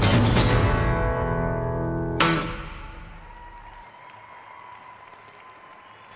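Recorded program music ending: rhythmic hits, then a held chord that dies away, and one last sharp accent about two seconds in that rings out. After that only a low background remains.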